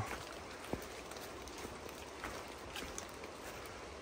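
Faint, steady wash of light rain and distant creek water in the woods, with a few soft footsteps on the wet, leaf-covered trail.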